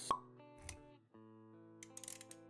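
Intro jingle for an animated logo: held musical notes with a sharp pop sound effect right at the start and a short low thud a little after half a second in. The music drops out briefly about a second in, then comes back with new notes.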